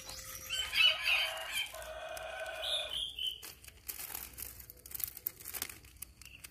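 A rooster crows once, one long call in the first two seconds. In the last two seconds a clear plastic bag crinkles as it is handled.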